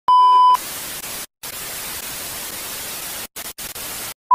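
Television test-pattern tone: a steady 1 kHz beep for about half a second, then TV static hiss that cuts out briefly a few times and stops at the end.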